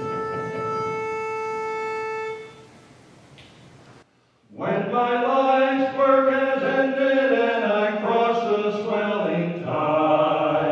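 A pitch pipe sounds one steady note for about two and a half seconds, giving the singers their starting pitch. After a short silence, a male quartet starts singing a cappella in close harmony.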